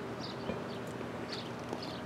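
Quiet outdoor background in a pause between speech, with a few faint, short ticks and clicks and a weak low hum.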